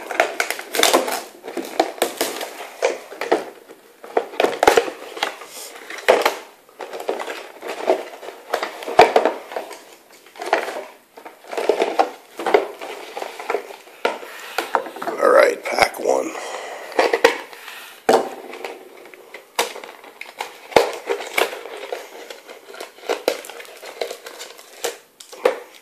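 Hands handling a cardboard trading-card box and its wrapped card packs: scraping and light knocks of cardboard, with pack wrappers crinkling and being torn open, in irregular short bursts.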